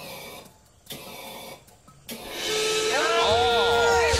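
Gas flame jets of a fire-breathing dragon prop firing in short rushing bursts about a second apart. The last burst grows louder about two seconds in and runs into loud cheering and music.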